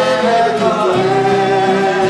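Group of voices singing the song's melody in held notes, one sliding down about half a second in, over a drone of pump-organ harmonium and strummed guitar.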